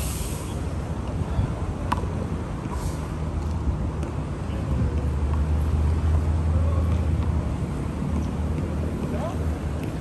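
Low rumble of road traffic with a heavy vehicle's engine, swelling in the middle and easing off. There is one sharp knock about two seconds in.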